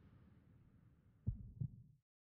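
Logo sound effect: two low thuds about a third of a second apart, like a heartbeat, over a faint low rumble that cuts off at the end.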